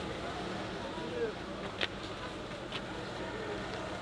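Things being handled inside an open car boot: two light clicks or knocks, one a little under two seconds in and one near three seconds, over a steady outdoor hum with faint voices.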